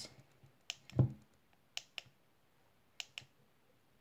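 Several sharp button clicks on a colour-changing lighting device's control, mostly in close pairs, as the light is switched to a new colour. A duller thump about a second in.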